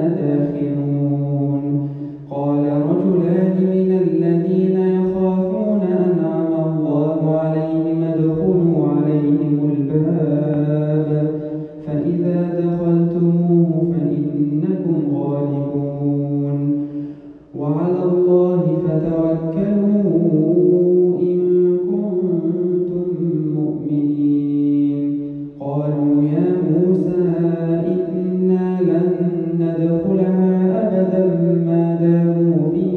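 A solo male voice reciting the Quran in melodic tajweed chant. It sings long, drawn-out phrases that bend in pitch, with a brief breath pause between phrases four times.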